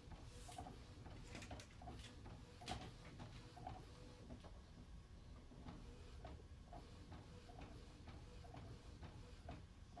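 Epson Stylus Photo P50 inkjet printer printing on a CD/DVD tray: faint, regular ticking, about two ticks a second, over a low mechanical hum.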